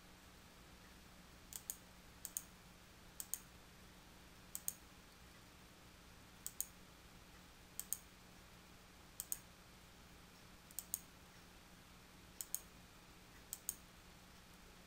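Computer mouse button clicks, quiet and sharp, about ten of them at irregular intervals of a second or two. Each is a quick double tick of press and release, made while anchor points are clicked in by hand along a Magnetic Lasso selection.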